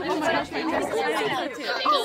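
Several young voices chattering and talking over one another.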